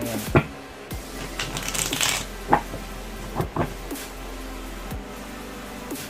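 A deck of playing cards being shuffled by hand: a rustling burst about a second and a half in, and a few sharp taps as the cards are handled.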